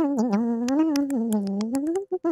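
A person humming one long, wavering note that slides down in pitch and rises again near the end, with a few faint clicks over it.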